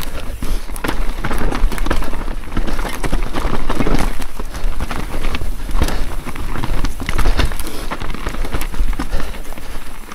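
Mountain bike ridden fast down a rough, rocky forest trail: the tyres rumble steadily over dirt and stones, and frequent sharp knocks and rattles from the bike come at irregular intervals.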